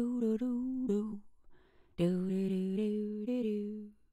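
A person humming a short wordless tune in two phrases of held notes that step up and down in pitch, the second phrase starting about two seconds in.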